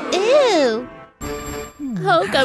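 A pitched sound sliding up and then down in the first second, then a short, steady ringing sound effect, over background music.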